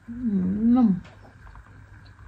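A woman's closed-mouth 'mmm' hum with a mouthful of food, about a second long, wavering up and down in pitch.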